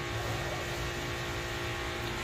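Steady background hum with several faint steady tones and no change throughout.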